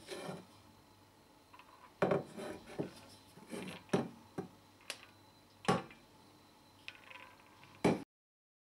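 Empty stainless steel double boiler handled by its plastic handle: a string of short, irregular knocks and clatters as the metal pot is tilted and shifted on the countertop.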